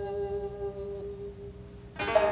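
Traditional Japanese jiuta music for shamisen and koto: a plucked note rings on as one steady tone and slowly fades, its brighter overtones dying away first. A fresh string is plucked right at the end.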